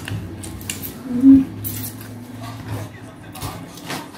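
Eating rice and fish curry by hand from a plate: scattered small clicks of chewing, lip smacks and fingers on the plate, with one short hummed 'mm' about a second in. A steady low hum runs underneath.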